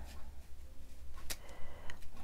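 Two small sharp clicks, the first louder, about half a second apart in the second half, as metal tweezers handle and tap small paper pieces, over a low steady hum.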